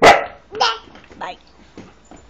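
A husky barks once, loud and sharp, right at the start, with a second bark-like yelp about half a second later.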